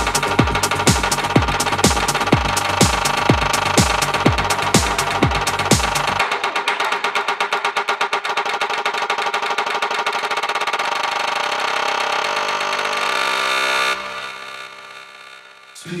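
Electronic dance music: a melodic progressive house track with a steady four-on-the-floor kick drum, about two beats a second, under layered synth chords. About six seconds in the kick drops out into a breakdown of sustained synth chords, which thin out and fade near the end.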